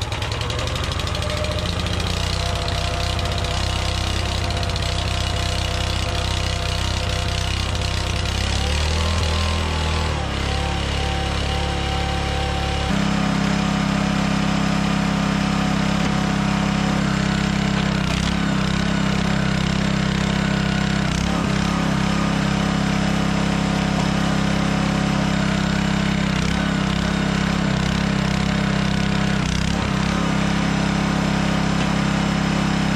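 Small gas engine of a log splitter running steadily. About 13 s in, its note shifts to a different steady pitch.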